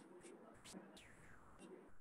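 Near silence, with a faint whispering voice.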